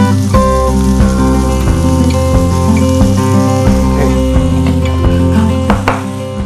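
Instrumental background music with held notes and a bass line, over the sizzle of mushrooms, bell peppers and paneer frying in oil in a pan.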